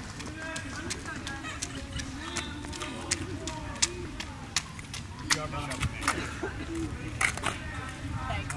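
Quiet, indistinct conversation among spectators, with scattered sharp taps about once a second.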